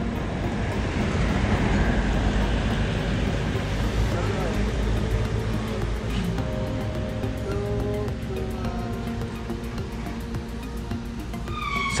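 Wind buffeting the microphone, a heavy low rumble, with background music under it whose held notes stand out more in the second half.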